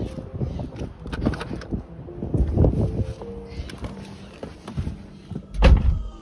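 Driver's door of a C7 Corvette Stingray being opened and someone climbing in, with clicks and rustling handling noises, then the door shut with a heavy thump near the end.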